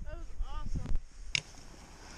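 A boy laughing in a few short rising-and-falling bursts, then quiet with a brief click about a second and a half in.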